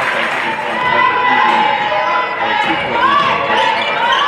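Live sound of a basketball game in a large gym: the ball dribbling on the hardwood court and shoes squeaking in short high chirps, over a steady crowd hum that echoes in the hall.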